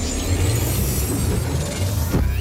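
Roller-coaster sound effects: a mechanical ratcheting clatter over a deep, steady rumble.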